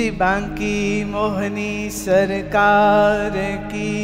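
Devotional Krishna bhajan: a woman singing long, wavering notes over a steady instrumental drone.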